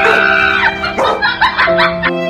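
A yellow Labrador retriever vocalizing with its head raised: a drawn-out call of under a second, then shorter calls, over steady background music.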